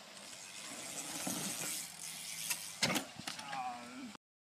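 BMX bike riding and crashing on a dirt jump, with rattling and outdoor hiss throughout. There are a couple of sharp knocks about two and a half to three seconds in, then a short falling vocal sound near the end.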